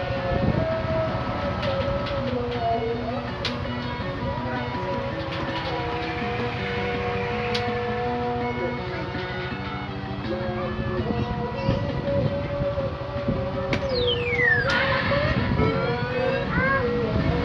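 A claw machine's simple electronic tune plays on, its notes stepping up and down, over a steady low hum. Near the end a quick falling electronic sweep sounds.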